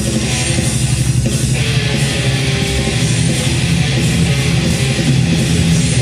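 Distorted electric guitar playing a fast, chugging heavy metal riff through an amplifier.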